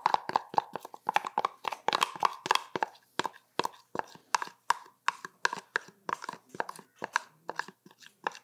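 A utensil scraping and knocking against a bowl as a soupy peanut-butter mix is scraped out onto grain feed: a quick, irregular run of short clicks and scrapes, several a second.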